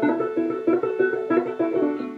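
A four-string banjo capoed at the 7th fret, finger-picked: a run of single plucked notes, about four or five a second, over a low string left ringing.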